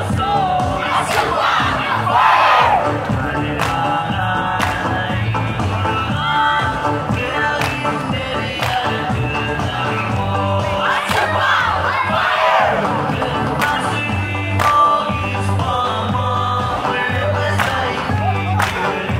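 Dance song for a traditional Micronesian line dance: voices chanting and singing over music with a steady beat, with sharp clap-like strikes now and then.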